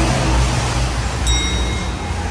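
Steady low rumble of traffic and street noise. About a second and a half in comes a single bright bell-like ding that rings for about half a second.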